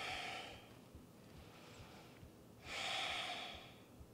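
A woman breathing audibly while resting: one breath fades out at the start, and another, about a second long, comes near the end.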